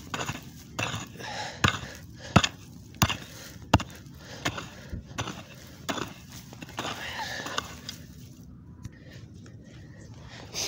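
A small mattock chopping into dry, stony earth, about ten sharp irregular strikes with soil and pebbles scraping and scattering, easing off in the last two seconds.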